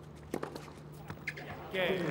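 Tennis rally: a sharp racket-on-ball hit about a third of a second in, then lighter knocks and footfalls on the court. Near the end a voice rises and crowd applause begins as the point ends.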